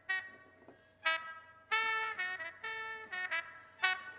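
Recorded trumpet part playing short notes and phrases through a noise gate on a Midas M32/Behringer X32 channel. Each note stops abruptly as the gate shuts, with near silence between them. The gate's key filter is set to a wide Q, so it opens for more of the horn.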